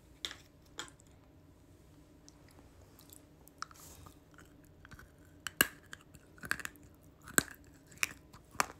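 A person biting and crunching something hard close to the microphone. There are two sharp crunches in the first second and a few louder ones spaced about a second apart near the end.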